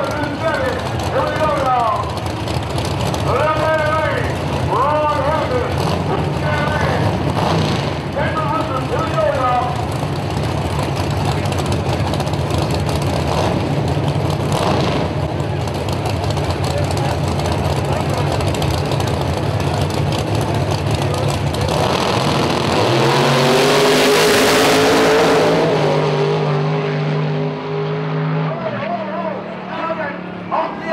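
Two drag-racing cars idling at the start line with a steady low rumble, then launching about 22 seconds in: a loud full-throttle run whose engine note rises and holds, dropping away near the end as the cars pull off down the strip.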